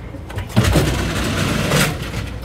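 Loud rushing rumble of a moving train's wheels and rails bursting in as the powered door between passenger cars opens, starting suddenly about half a second in and easing just before the end.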